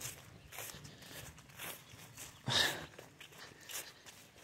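Soft footsteps through wet grass, a few uneven steps about a second apart, the loudest a little past halfway.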